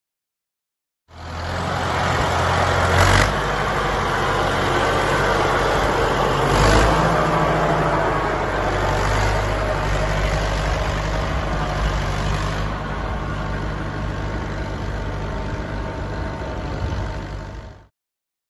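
1948 David Brown Cropmaster tractor's four-cylinder TVO engine running as the tractor drives off, starting about a second in. The engine note shifts twice in the first seven seconds, and the sound grows duller in the second half as it moves away.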